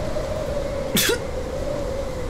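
A steady, slowly falling whistle of wintry wind from the cartoon soundtrack. About a second in, a freezing character gives one short, sneeze-like vocal burst.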